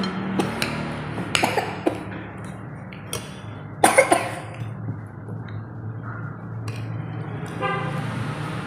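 Metal spoons clicking and scraping against plates during a meal, a few sharp clinks with the loudest cluster about halfway through, over a steady low hum.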